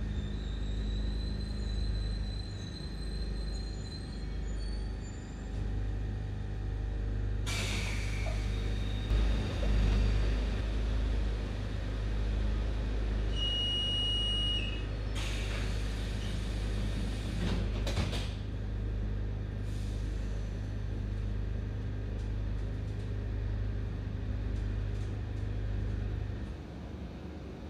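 Metro car of an Alstom train at a station stop, with a steady low hum and rumble and a faint high whine in the first few seconds. A burst of air hiss comes as the doors open about seven seconds in. A single steady warning beep lasting about a second and a half follows, then another hiss and a sharp clunk as the doors close.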